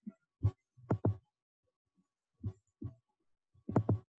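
Handling noises: about seven short, soft thumps and clicks at irregular intervals.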